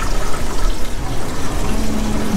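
Water running steadily.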